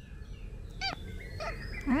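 A kitten meowing in two short calls, about a second in and half a second later, with faint birdsong chirping behind.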